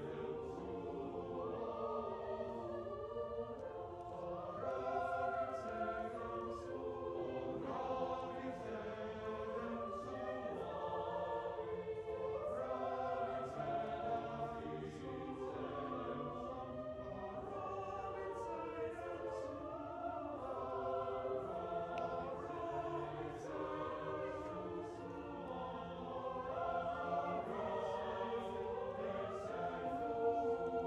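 High school choir singing, several voice parts sounding together, the melody moving steadily.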